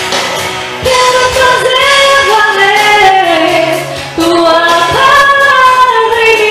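A woman singing into a hand-held microphone. Her voice comes in about a second in, breaks off briefly near four seconds and carries on.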